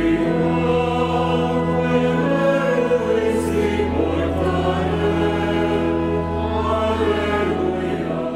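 Church choir singing in slow, long-held chords over steady low organ notes, with the reverberation of a large church.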